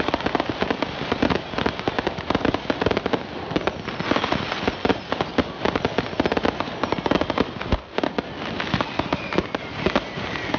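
Fireworks going off in rapid succession: a dense, continuous run of bangs and crackling pops, with a brief lull about eight seconds in.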